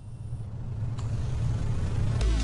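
A low rumble that swells steadily louder, with a single click about a second in: the build-up that opens the backing hip-hop track, just before its heavy bass comes in.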